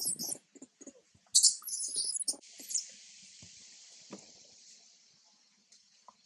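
Infant long-tailed macaque screaming in shrill, high-pitched squeals: a short burst at the start and a longer one about a second and a half in. They are distress cries from a baby being pinned down by its mother.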